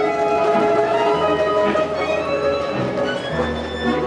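A live acoustic street trio from a balalaika ensemble playing a classical arrangement: long held melody notes over a sustained bass line that shifts every second or so.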